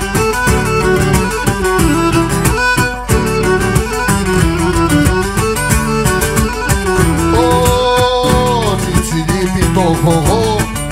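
A live Cretan band playing an instrumental passage: a Cretan lyra leading the melody over laouto and mandolin strumming, with percussion keeping a steady beat. Past the middle a long held note slides downward.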